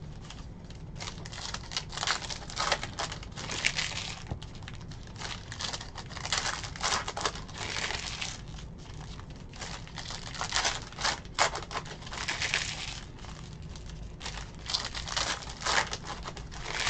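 Trading cards being flicked and slid through a stack by hand, with foil pack wrappers crinkling: irregular bursts of rustling over a steady low hum.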